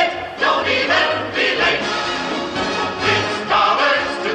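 Choir singing over an orchestra in a brisk show tune, with a bass note bouncing about twice a second.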